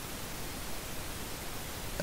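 Steady low hiss of background noise from the recording microphone, with no distinct sound event.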